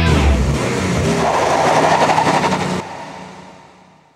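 A rock band's closing chord, cymbals and guitar noise ringing out at the end of a song. It drops off sharply about three seconds in and fades away to silence.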